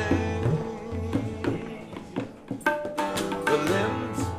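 Instrumental passage of a folk song: tabla strokes over a plucked long-necked string instrument, with the flute coming in on held notes about two-thirds of the way through.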